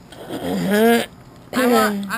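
A sedated woman making two drawn-out, wordless moans, the first rising in pitch, the second falling, loud against the room.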